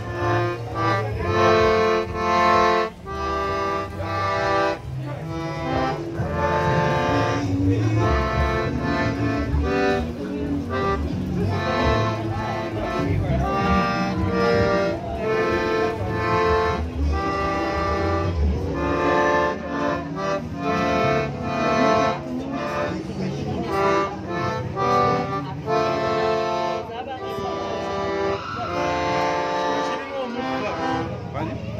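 Piano accordion being played: a rhythmic tune of repeated chords on the keyboard over a bass line.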